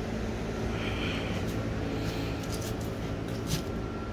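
A steady low mechanical hum, with a soft breath through the nose about a second in and a couple of faint clicks near the end.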